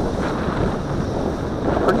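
Wind buffeting the microphone: a steady, low rush of noise with no clear tone.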